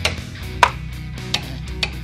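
Four hammer blows on the steel wheel of a pickup truck, metal striking metal, the second one the loudest, over background rock music.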